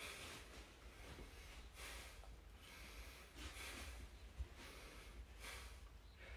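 A man's faint, heavy breathing under effort while he holds a side plank: a breath roughly every two seconds, with one faint tap partway through.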